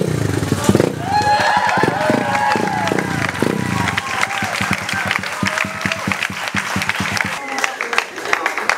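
A custom motorcycle's engine running at idle, with the audience applauding and cheering over it; the engine stops near the end.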